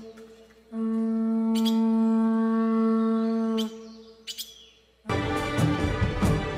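Conch shell trumpet blown in one long, steady note of about three seconds, with a few sharp clicks around it. About five seconds in, loud music comes in.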